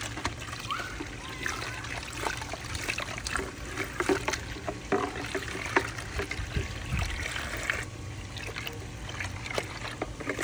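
Garden hose running water into a plastic shop vac drum, with trickling and irregular small splashes as the soapy rinse water spills over the rim.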